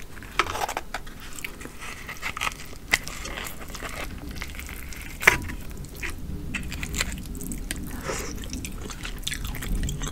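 Close-miked crackling and snapping of air-fried lobster tail and king crab leg shell being pulled and worked apart by hand, with soft squishes of the meat and a sharp click about five seconds in.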